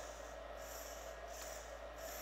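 A small hobby servo whirring in short bursts, about three in two seconds, as the transmitter stick swings it back and forth. Each burst is the servo moving and shows that the receiver has bound to the radio.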